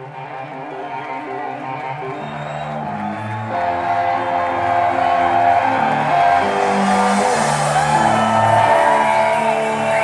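Live rock music led by electric guitar, playing slow, long sustained notes. It fades in and grows louder over the first few seconds, and in the second half the guitar bends its notes with vibrato.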